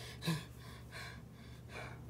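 A person's sharp gasping intake of breath about a quarter second in, followed by quieter breathing.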